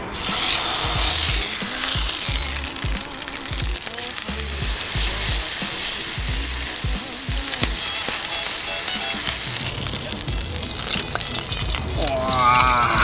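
Wagyu sirloin steak sizzling in an oiled frying pan on an induction cooker. The sizzle starts suddenly and loudly as the meat goes into the pan and eases off near the end.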